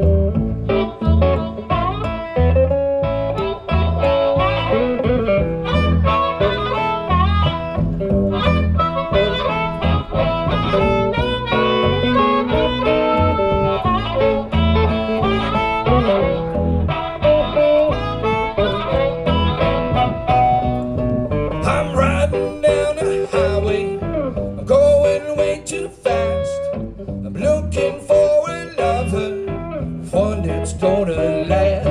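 Live blues trio playing: a harmonica cupped to a vocal microphone leads with bending lines over a steady upright-bass pulse and electric guitar rhythm.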